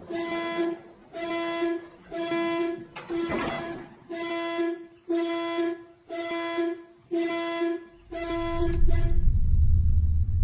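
Car horn sounding in repeated even blasts, roughly one a second, that stop about nine seconds in. A deep rumble swells up near the end.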